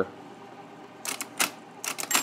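1953 IBM Model A electric typewriter's carriage tabbing over to its tab stop, giving a handful of sharp mechanical clacks in the second half. The tab mechanism is working properly.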